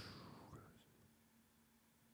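Near silence: room tone. A faint soft sound fades away in the first half-second, and then only a faint steady hum remains.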